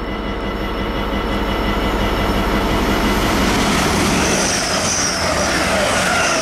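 Class 180 Adelante diesel multiple unit passing through the station at speed: a rushing run of engine and wheel noise that grows louder as it nears, with a high hiss coming in about four seconds in.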